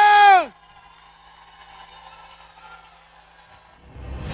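A male singer's long held note through the hall's PA, sliding down in pitch and cutting off about half a second in. After it only faint hall sound remains, until a music sting swells up at the very end.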